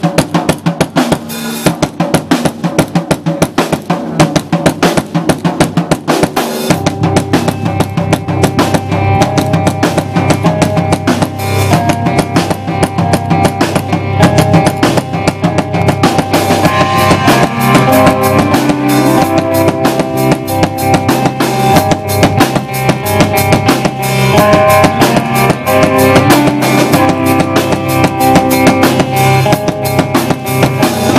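Live rock band starting a song: a Yamaha drum kit plays alone at first, then bass guitar and electric guitars come in about seven seconds in and the full band plays on loudly.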